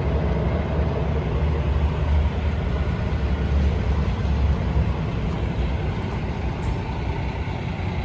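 Warmed-up Cummins ISX inline-six diesel engine of a semi tractor idling steadily, a low, even rumble.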